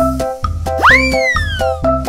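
Cartoon 'boing'-type sound effect, a quick rise in pitch followed by a slow, falling slide lasting about a second, over cheerful children's background music. It comes as a letter is picked and flies into the blank of a missing-letter puzzle.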